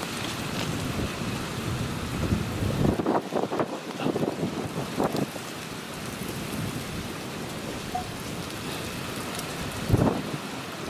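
Strong thunderstorm winds rushing and buffeting the microphone in uneven gusts, strongest from about two to five seconds in, with another sharp gust at the very end.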